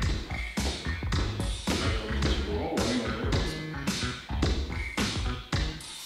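A song played for a dance workout, with a steady beat of about two beats a second over a continuous bass line.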